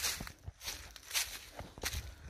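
Footsteps walking through dry fallen leaves on a woodland floor, about two steps a second.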